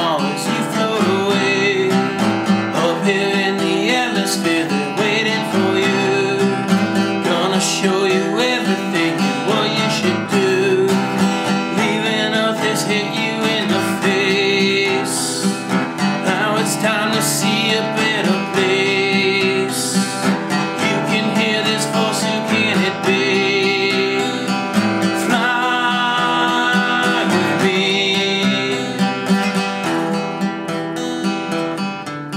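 Solo acoustic guitar strummed steadily, with a man singing an alternative rock song over it.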